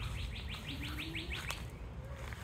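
A songbird singing a rapid trill of short rising chirps, about seven a second, which stops about one and a half seconds in, over a steady low rumble.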